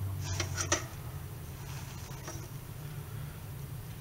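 A low, steady electrical hum with a slight buzz, and a couple of faint clicks within the first second.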